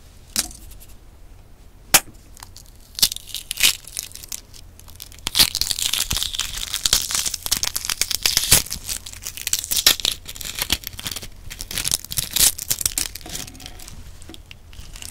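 Boiled brown eggshell being cracked and peeled off by hand close to the microphone. There are a few sharp cracks in the first few seconds, then from about five seconds in the shell fragments crackle and crinkle densely.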